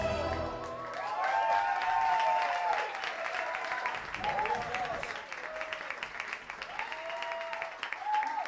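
Karaoke backing music ending within the first second, followed by audience applause with voices calling out over the clapping several times.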